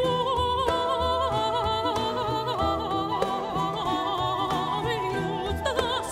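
A soprano sings with a wide vibrato, accompanied by a small baroque ensemble of lutes and bowed strings over a low bass line.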